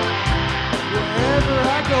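Live rock band playing: drum kit, electric bass, electric and acoustic guitars, with a sung vocal line over the top.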